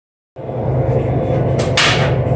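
A steady, loud low rumble of running machinery starts a moment in and holds level, with a short hiss just before the end.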